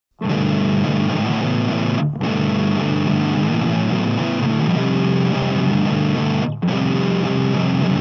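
Distorted electric guitar playing a repeating riff on its own at the start of a grunge rock song, breaking off briefly twice.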